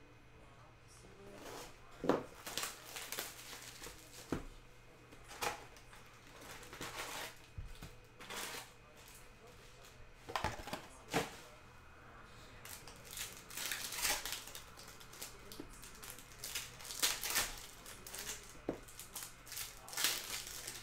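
Cardboard hobby box and foil trading-card packs being handled and opened by hand: irregular bursts of crinkling and crackling wrapper noise with short rustles of cardboard.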